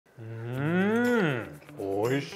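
A man's long, drawn-out 'mmm' of delight on tasting food, rising and then falling in pitch, with a second one starting near the end.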